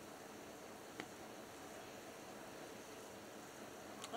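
Wood fire burning in a metal fire pit, faint and steady, with one sharp crackling pop about a second in.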